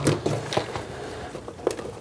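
Hands rummaging in a Kuny's leather tool pouch: leather rustling and creaking, with a few light clicks of tools against each other, the sharpest right at the start.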